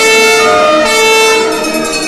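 Brass band playing long held chords, the notes shifting about every half second in a siren-like way.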